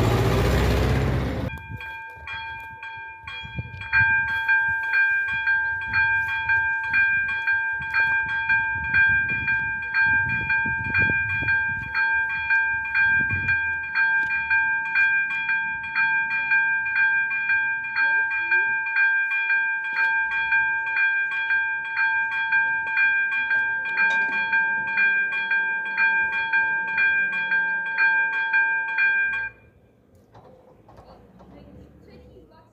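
Warning bell of an AŽD-97 railway level crossing, an electronic ringer, striking in a fast, even rhythm that grows louder about four seconds in and stops abruptly just before the end. It signals an approaching train as the barriers close. A tractor with a trailer passes close by during the first second and a half.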